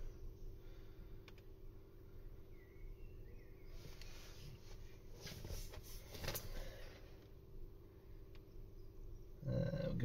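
Faint steady hum in a quiet car cabin, with a few soft clicks and light rustling as a laptop's touchpad is worked.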